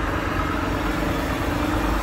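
Semi-truck diesel engine idling close by: a steady low rumble with a constant hum over it.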